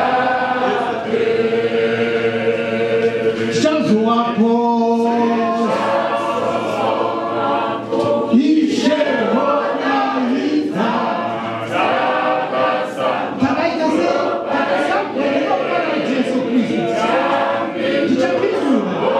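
A choir of women and men singing unaccompanied, with a man's voice leading the singing.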